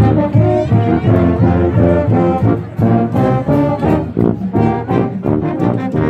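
Marching band brass section playing a loud, rhythmic tune of short, changing notes, with sousaphones carrying the low bass line close to the microphone.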